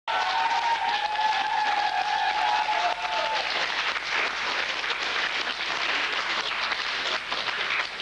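Studio audience applauding, a dense, continuous clapping. Over the first three seconds a held tone sits above the clapping, then slides down and fades out.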